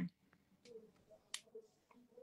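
Quiet pause in a phone-call audio feed with faint low murmuring and one sharp click a little past halfway, followed by a couple of softer ticks.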